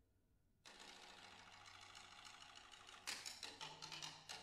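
Drum set played softly: a short pause, then a fast, even roll of rapid strokes, then separate sharp strokes again from about three seconds in.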